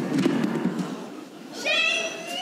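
A knock and rustling as a child actor sinks to the stage floor, then, about one and a half seconds in, a high-pitched child's voice cries out.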